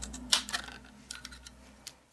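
A Stampin' Up! Word Window Punch punching through cardstock: a sharp click about a third of a second in, then a few lighter clicks and paper rustling that die away.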